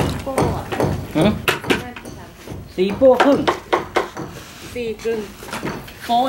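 Metal mixing hoe knocking and scraping in a tub of wet sand-and-cement render mix, with a quick run of knocks in the first two seconds.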